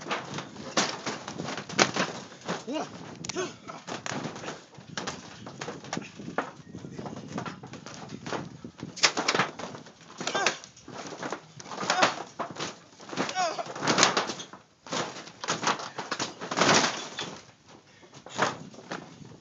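A trampoline's mat and springs thumping and squeaking in an uneven run of impacts as several wrestlers bounce, grapple and fall on it, with a gasp a few seconds in.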